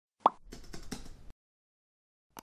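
Intro sound effect: a single short, sharp pop, followed by about a second of faint, rapid clicks.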